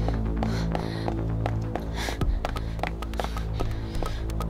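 Tense background score: low, sustained droning tones with a throbbing pulse, over which come many short sharp clicks, more often in the second half.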